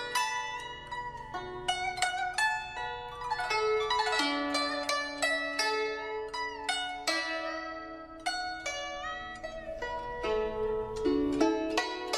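Instrumental background music: a flowing melody of plucked string notes, some of them bending in pitch, over held lower notes.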